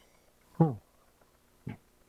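A man's short vocal sound falling in pitch, like a brief "음" hum, about half a second in, and a shorter one near the end.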